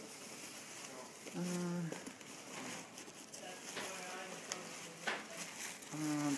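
Bubble wrap and plastic packaging crinkling and rustling as it is handled and pulled from a cardboard box, with a short drawn-out voiced sound, like a hum, about a second and a half in.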